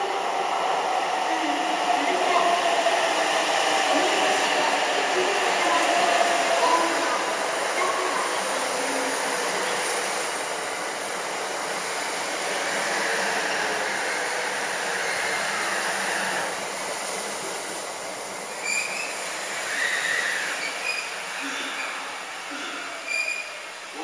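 Limited express Shirasagi electric train pulling into the platform and braking to a stop: a whine falling steadily in pitch over the first eight seconds as it slows, over the rush of the passing cars, the noise easing off near the end as it halts.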